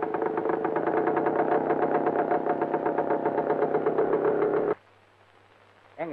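Motorcycle engine running with a fast, even pulsing beat, cutting off suddenly a little under five seconds in.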